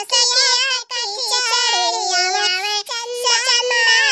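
A high-pitched cartoon character's voice singing a song, with two short breaks between phrases.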